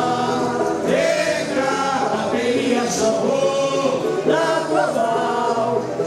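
A group of voices, a woman's and men's, singing a carnival samba together into microphones.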